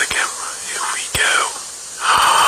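Breathy whispering from a person, in sweeping, drawn-out sounds with no clear words, with a single sharp click a little past one second in.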